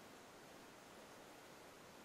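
Near silence: a faint, even hiss of room tone.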